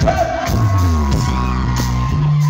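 Live rock band playing loud, with electric guitars and drums, heard from the crowd in a club.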